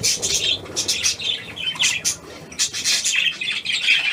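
A flock of budgerigars chattering: many short, quick chirps and squawks overlapping with no pause.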